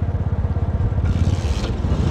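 Small motorcycle engine running steadily close by, a fast low putter, with a rush of road or wind noise coming up about a second in.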